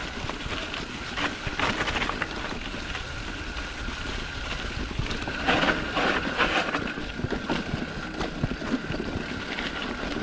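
Trek Marlin 7 mountain bike rolling down a rocky dirt trail: tyres crunching on dirt and the bike rattling over bumps, with a steady rumble of wind and ground noise. The rattling comes in louder clusters about a second in and again around the middle.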